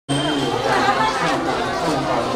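Several people talking over one another: crowd chatter with no single clear voice.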